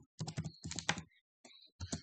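Computer keyboard typing: a quick, uneven run of keystrokes.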